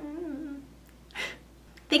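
A woman humming briefly with closed lips, the pitch wavering, then a short breath in about a second later before she speaks again.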